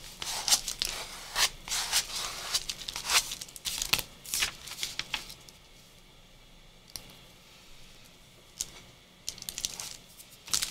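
A flat piece of cardboard rubbed in scratchy strokes, about two a second, over freshly glued collage paper, burnishing it down. The rubbing stops about five seconds in and starts again near the end.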